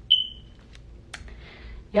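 A single short, high electronic beep that fades away within about half a second, then a sharp click about a second later.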